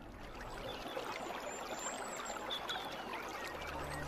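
Water pouring in a thin stream from a bamboo spout, trickling and splashing steadily.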